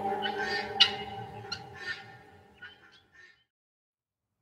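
Soft music with sustained tones fading out under a string of short gull calls, the later ones fainter. Everything stops about three and a half seconds in.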